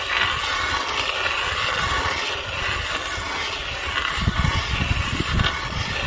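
Hand ice auger being turned into lake ice, its steel blades scraping and grinding steadily as they cut; the ice is hard going. Low rumbling comes in from about four seconds in.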